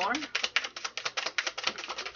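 A deck of tarot cards being shuffled by hand: a fast, even run of crisp card clicks, about eight a second, that stops just before the end.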